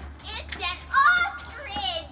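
Children's voices: three short, high-pitched calls or exclamations, the loudest about a second in and the highest near the end.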